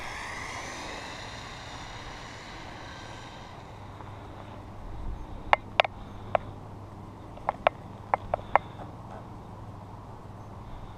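The brushless motor of a stretched Arrma Typhon 6S RC car whines as the car drives off down the road, its pitch sliding and the sound fading away over the first few seconds. In the second half come about eight short, sharp clicks in quick succession.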